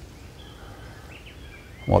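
Quiet outdoor ambience with a few faint, distant bird chirps; a man's voice starts right at the end.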